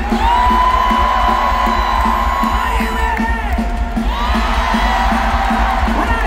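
Live punk rock band playing through a stadium PA, heard from within the crowd: long held notes over a steady drum beat and heavy bass. Crowd whoops and cheers over the music.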